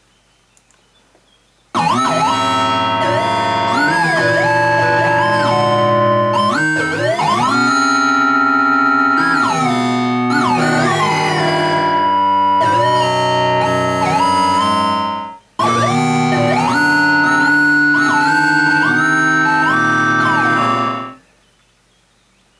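Google's Moog synthesizer doodle playing a multi-tracked improvisation: several layered synth lines of held notes that glide up and down between pitches. It starts about two seconds in, breaks off for a moment past the middle, and stops about a second before the end.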